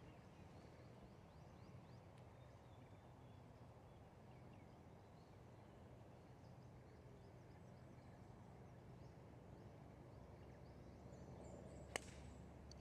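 Near silence: quiet open-air ambience with faint bird chirps, ending in one sharp click as a golf club strikes the ball.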